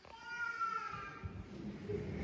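A single high-pitched, meow-like cry lasting just over a second, falling slightly in pitch.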